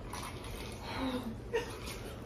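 A woman's short hummed murmur about a second in, and a brief second one just after, over a steady low room hum.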